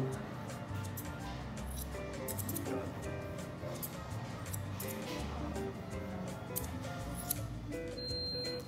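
Steel haircutting scissors snipping through hair with a comb, several short crisp snips at irregular intervals, over steady background music.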